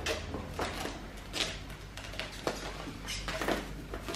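Plastic cling film being pulled off its roll and wrapped around a pillow, with irregular crinkling and rustling.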